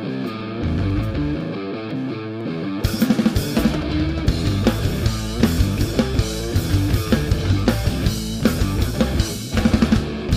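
Rock trio playing live without vocals: electric guitar with bass guitar for the first few seconds, then the drum kit comes in with steady hits about three seconds in and the full band carries on.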